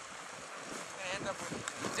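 Wind buffeting the microphone as a steady hiss. A high voice calls out about a second in, and a word is spoken near the end.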